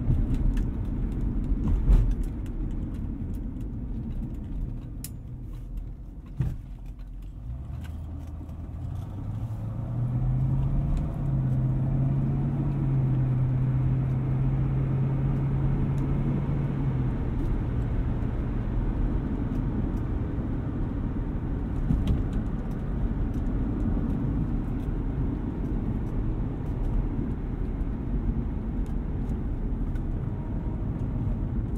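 Inside the cabin of a 1973 Mercedes-Benz 450SEL on rough, broken pavement: a steady road and tyre rumble with a few sharp knocks from bumps. About eight seconds in, the 4.5-litre V8's note climbs in steps as the car speeds up, holds for several seconds, then falls back.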